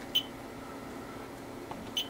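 Two short, high key-press beeps from a Siglent SDS1102X oscilloscope's front panel as its buttons are pressed: a clear one just after the start and a fainter one at the end, over a low steady hum.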